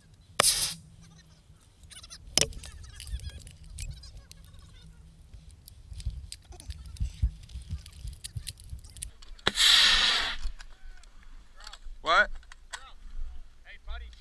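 Soldiers shouting in short loud bursts, harsh and distorted on a helmet camera's microphone, the longest about ten seconds in, among scattered sharp cracks. A low rumble of wind and handling noise on the camera runs underneath.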